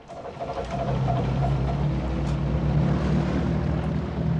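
Motorboat engine running with a steady low hum that builds up over the first second, heard from a film soundtrack.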